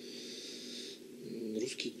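A pause in a man's speech: a soft hiss for about a second, then his voice starts up again, faint at first and fuller near the end.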